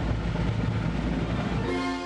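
Military band drum roll, a loud steady rumble, with the brass starting to play near the end, as the band goes into a national anthem.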